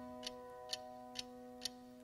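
A quiet break in a song: a held chord fades slowly under a light tick about twice a second, like a clock.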